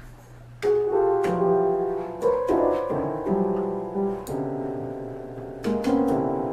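Two-manual home electronic organ pawed by a dog: clusters of held organ notes start about two-thirds of a second in and shift every half second to a second as keys are pressed, with clicks at the changes, over a steady low hum.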